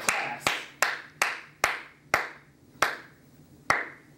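Slow, scattered handclaps: about eight single claps that space out and trail off, a thin, half-hearted round of applause.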